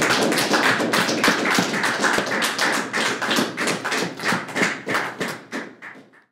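A small audience applauding, with many hands clapping irregularly. The clapping thins and fades out near the end.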